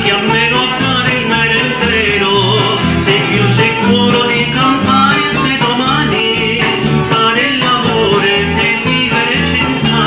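Band music with guitars and bass over a steady drum beat.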